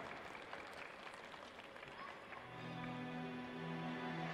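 Faint, scattered applause from a small arena crowd, fading away. About two and a half seconds in, background music with held low notes begins.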